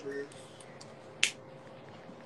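A single sharp click about a second in, over faint room noise with a low steady hum.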